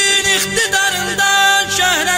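Azerbaijani mugham music: an ornamented, wavering melodic line over a steady low drone.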